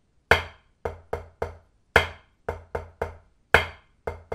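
One hand's part of a flam accent played with a drumstick on a drum practice pad: one accented stroke followed by three softer taps. The four-stroke group repeats three times at an even, slow triplet pace.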